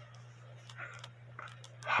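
Quiet room tone: a steady low hum with a few faint, irregular clicks.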